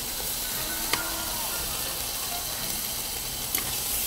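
Shrimp sizzling in olive oil in a stainless steel sauté pan as barbecue sauce is stirred into them, a steady hiss with a spoon clicking against the pan about a second in and again near the end.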